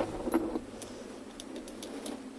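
A few light, separate metallic clicks and rattles from a cordless drill and screws being handled.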